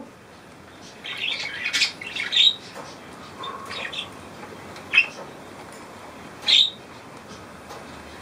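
Parakeet squawks: a run of harsh calls in the first few seconds, then two single short, sharp calls about a second and a half apart.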